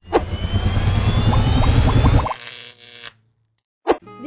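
Channel logo sting sound effect: a loud rumbling whoosh with a faint rising whine and a quick run of short plinks, which cuts off after a little over two seconds. It trails off into silence, and a single short click comes near the end.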